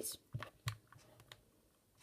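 Plastic layers of a Rubik's cube being twisted by hand, giving a few short clicks as a face is turned.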